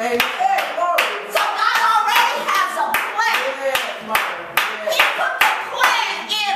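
Steady rhythmic hand clapping, about two and a half claps a second, with a voice over it.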